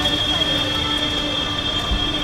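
Electric motor of a Mahindra XUV700's powered driver's seat whining steadily as the seat slides by itself, the car's door-linked seat-retract feature at work.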